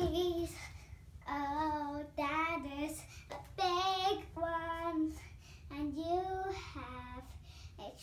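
A young girl singing an improvised song in a series of short held notes with brief pauses between phrases, one note near the middle wavering in pitch.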